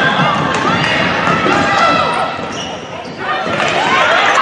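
On-court sound of a women's college basketball game in a largely empty arena: the ball dribbling on the hardwood and players' voices calling out on the court, with no crowd noise to cover them.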